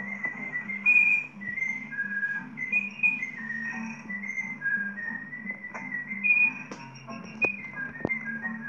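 A whistled tune of short notes stepping up and down in pitch, over a low steady background tone, with two sharp clicks near the end.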